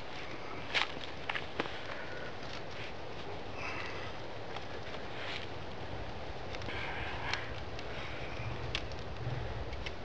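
Wooden sticks and cord being handled on a stick tabletop: light knocks and rustles, with a few sharp clicks about a second in.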